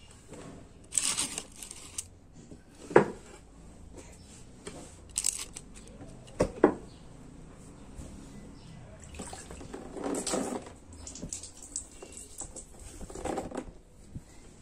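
Water splashing and sloshing in a plastic baby bathtub as a baby is bathed, broken by a few sharp knocks, the loudest about three seconds in and again past six seconds.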